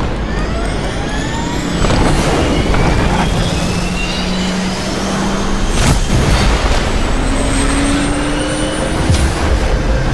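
Fighter jet engines running up to full power for a catapult launch from an aircraft carrier deck: a loud steady jet roar with several turbine whines rising in pitch. A sudden sharp crack comes about six seconds in, and another near the end.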